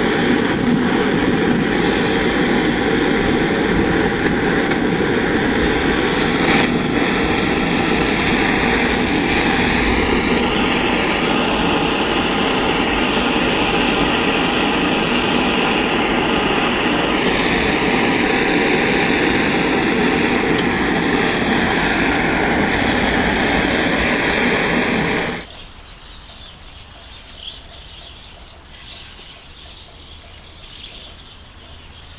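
Propane-butane torch flame running steadily while it heats a die-cast zinc part for brazing with a zinc-aluminium rod. It cuts off suddenly about 25 seconds in, leaving a faint background.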